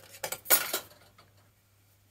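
A metal pipe being drawn out of a shelf of stacked metal tubes and rods, scraping and clinking against the other metal stock in a few short clatters, the loudest about half a second in.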